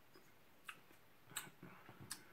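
Near silence with a few faint short clicks, the clearest about a second and a half in.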